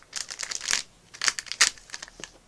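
Crinkling of a blind-bag toy packet being worked open by hand, in short irregular bursts.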